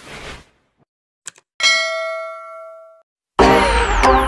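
Subscribe-animation sound effects: a whoosh fades out at the start, a short mouse-click sound about a second in, then a bell-like ding that rings for about a second and a half. Loud music cuts in near the end.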